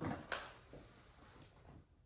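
Faint cardboard handling as a retail box is lifted out of a cardboard shipping carton, with a soft knock about a third of a second in.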